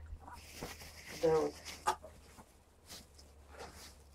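Rustling of a nonwoven agrofibre (spunbond) row cover as it is handled, spread and straightened over a garden bed, with a few soft clicks.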